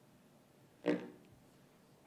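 A single short voiced sound from a person about a second in, a brief grunt-like syllable such as a quick chuckle, over quiet room tone.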